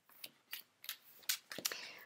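Paper cards being gathered up off a wooden table: a few light clicks and taps, then a short sliding rustle near the end.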